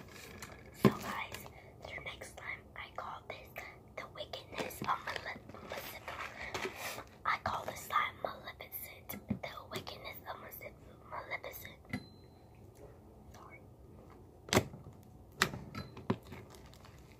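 Close whispering, broken by soft crackles and squishes of thick beaded slime being handled. Near the end comes a sharp snap, with the whispering gone quieter.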